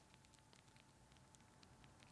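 Near silence, with a few faint light clicks as the geared wheel of a drop-in variable ND filter tray is wiggled by hand. The wheel is loose and wiggly.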